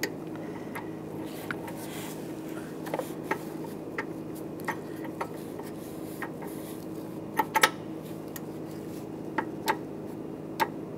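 Torque wrench with an O2 sensor socket clicking as it tightens a new upstream oxygen sensor toward 31 ft-lb: scattered short metallic clicks, the sharpest a quick pair about seven and a half seconds in, over a steady low hum.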